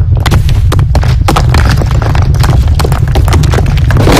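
Building collapsing in an earthquake: a loud, continuous deep rumble with many sharp crashes and clatters of falling debris and masonry.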